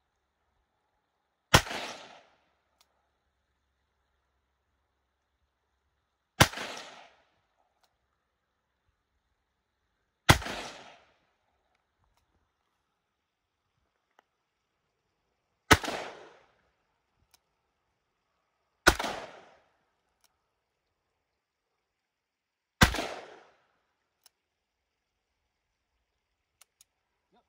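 Six single shots from a Taurus Raging Bee revolver in .218 Bee with a 10-inch barrel, fired several seconds apart at an uneven pace. Each is a sharp crack that trails off in about half a second of echo.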